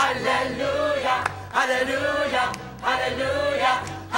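A mixed group of young men and women singing together as a choir, in loud short phrases that start again about every second and a half.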